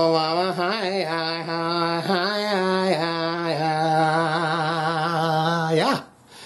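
A man's voice holding one long, chant-like "uhhh" on a single low note, wavering in pitch a few times, then cutting off just before the end.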